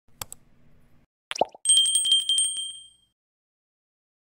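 Subscribe-button animation sound effects: a quick mouse click, a short pop, then a small notification bell ringing rapidly for about a second and a half before fading out.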